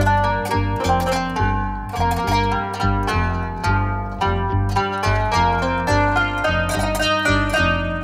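Qanun played fast in a dolab in maqam bayati on G, a quick run of sharply plucked, ringing notes. A plucked double bass keeps a rhythmic line of low notes underneath.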